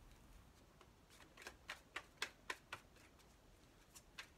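Tarot cards being shuffled by hand: a run of faint, soft card clicks, about four a second, starting about a second in.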